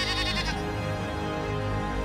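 A goat bleats once, a short quavering call that ends about half a second in, over background music with a steady low beat.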